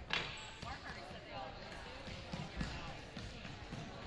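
Indistinct chatter of people talking in a school gymnasium, with a sharp bang just after the start and a few dull thuds later on.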